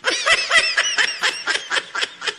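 A man laughing behind his hand: a run of quick, stifled bursts of laughter, about four a second.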